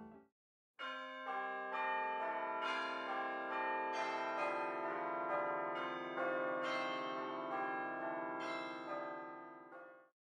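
Bells struck one after another, about two strikes a second, each tone ringing on under the next. The run starts after a moment of silence and fades out near the end.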